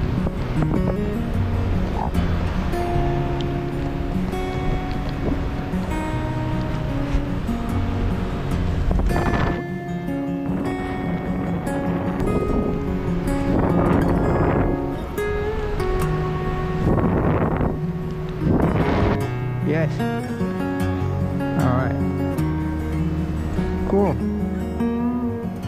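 Fingerstyle acoustic guitar music, plucked notes changing steadily, with a few louder rushing swells along the way.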